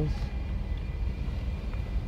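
A car's steady low rumble, heard from inside the cabin.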